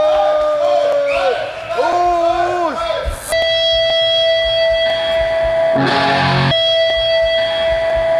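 Distorted electric guitar opening a live heavy metal song: long sustained notes that bend up and down in pitch, then a steady held note broken by heavy distorted chords with bass about five to six seconds in.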